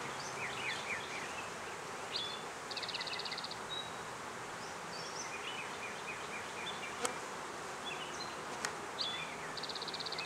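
Honeybees buzzing steadily in a cloud around an open, heavily populated hive. Two sharp knocks come in the second half.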